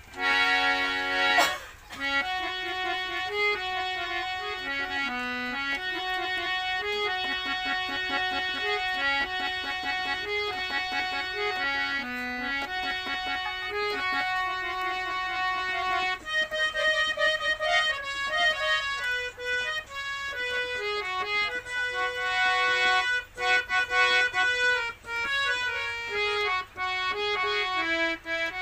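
Harmonium playing a film-song melody. It opens with a loud chord lasting about a second and a half, then moves into a tune of held notes that change step by step.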